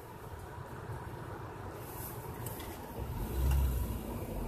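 Car driving slowly on a snowy road, heard from inside the cabin: steady engine and road noise, with a louder deep rumble about three seconds in.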